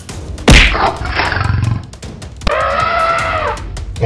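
A heavy impact sound effect about half a second in, then an animal roar sound effect, a held cry that drops in pitch as it ends, over background music.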